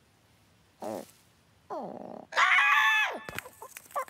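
Cartoon ostrich character's voice, no words: a short wobbly grunt about a second in, a falling whine, then a loud held cry just past the middle, followed by a few small clicks.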